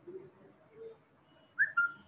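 Two short, high whistle-like notes about a second and a half in, the first falling and the second lower and held, after two fainter low sounds.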